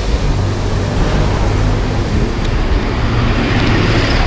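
A bus engine running close by, a loud, steady low rumble with street traffic noise.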